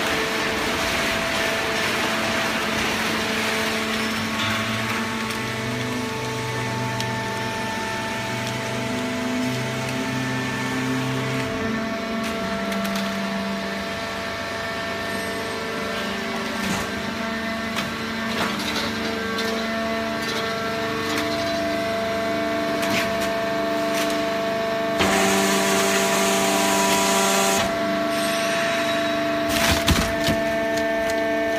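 Fully automatic horizontal hydraulic cardboard baler running, a steady machine drone with several steady tones that shift in pitch, and scattered clicks. A louder rushing stretch of two or three seconds comes near the end.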